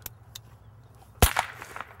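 A cap gun fires one sharp bang about a second in, after a couple of faint clicks.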